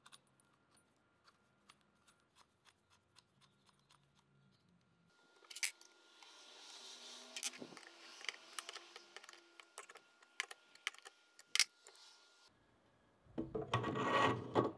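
Faint clicks and clinks of small steel parts being handled: a belt grinder's platen bracket and tracking-wheel assembly being fitted by hand. It is nearly silent for the first few seconds, then about five seconds in a sharper click starts a stretch of scattered metal clicks that stops shortly before the end.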